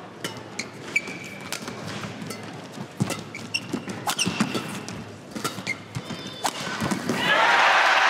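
Badminton rally: sharp racket strikes on the shuttlecock, roughly one a second, with short squeaks of shoes on the court floor and the thud of footwork. About seven seconds in, the crowd breaks into loud applause as the point ends.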